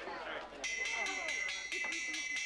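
A hand bell rung rapidly to call a noisy room to attention: a shrill ringing struck about seven times a second, starting about half a second in, over crowd chatter.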